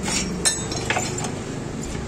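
Several sharp metal-on-metal clinks from motorcycle parts and tools being handled, the loudest about half a second in, over a steady low hum.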